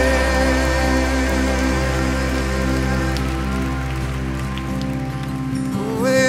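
Soft sustained instrumental music from a live band: held chords ringing over a steady low bass note, with no singing.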